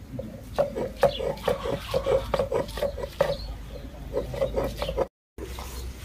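Stone roller worked back and forth on a flat grinding stone (sil-batta), a rhythmic rubbing and grinding of about two to three strokes a second. It breaks off briefly about five seconds in.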